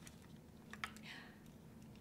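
Faint clicks and rustling from headphones being taken out of a wicker basket, with a couple of small clicks a little under a second in.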